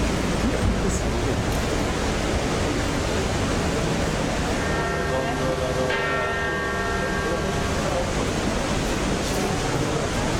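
A church bell ringing for about three seconds midway, its steady overtones sounding over a constant outdoor background hiss.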